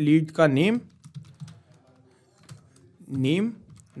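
Faint computer keyboard keystrokes, a handful of light taps spread over about two seconds, typing a short word into a text field. They sit between short stretches of a man's speech near the start and shortly before the end.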